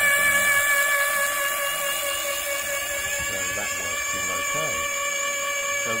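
Electric rear hub motor spinning the trike's wheel against a turbo trainer's roller under load. It makes a steady whine of several fixed tones.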